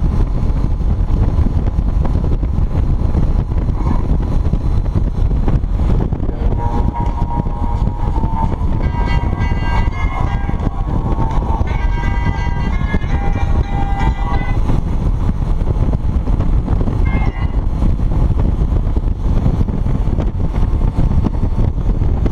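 Motorcycle riding at highway speed, heard as a steady rumble of wind buffeting the microphone with engine and road noise beneath. From about seven to fourteen seconds in, a series of held pitched tones that change note every second or so sounds over it, and briefly again a few seconds later.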